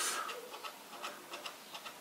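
A metal key scratching the coating off a scratch-off lottery ticket: faint, scattered light scraping ticks.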